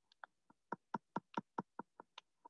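Computer keyboard being typed on, a quick even run of about nine faint key clicks, roughly five a second, heard over a video-call microphone.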